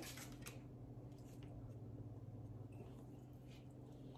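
Near silence: room tone with a low steady hum and a few faint clicks from hands handling the clay and wax paper on the counter.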